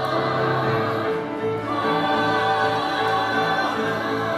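A musical-theatre cast singing together in chorus, holding long notes.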